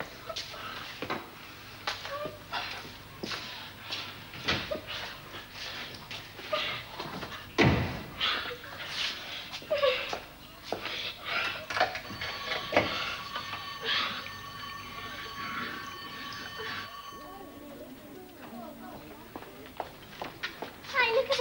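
A scuffle on a wooden floor: shuffling, knocks and thuds as a boy is held down and roughed up, with short voice sounds among them; the loudest thud comes about eight seconds in. A steady high tone sounds from about twelve to seventeen seconds.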